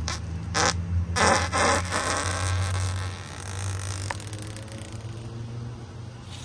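A man farting: a short burst about half a second in, then a longer, rough, buzzing one just after a second, over a steady low hum.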